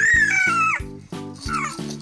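A baby's high-pitched squeal: one long, wavering cry in the first second and a shorter one about a second and a half in, over background music with a steady beat.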